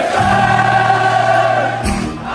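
A crowd of fans singing together with a live, amplified acoustic guitar, holding one long note that dips near the end over a steady low note.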